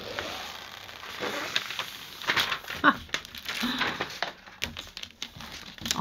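A sheet of frisket paper, a thin plastic masking film, crinkling and rustling as it is laid and smoothed by hand over a painted canvas, with uneven small crackles.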